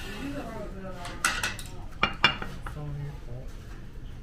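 Ceramic plates and cutlery clinking on a table: a few sharp clinks, about a second in and twice near the middle, with faint voices in the background.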